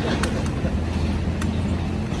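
Steady low rumble of road traffic, with a couple of faint clicks.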